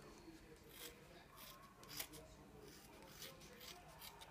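Faint, scattered snips of small scissors trimming hockey tape around the edge of a stick blade.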